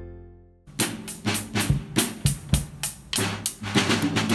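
A strummed guitar fades out, then a drum kit is played with sticks from about half a second in: a groove of snare and bass drum hits with cymbals.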